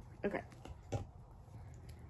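Quiet handling sounds of a sandwich being assembled, with one sharp tap about a second in and a few fainter ticks.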